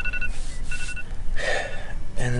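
Two short, steady high electronic beeps, each about a third of a second long, part of a repeating beep pattern.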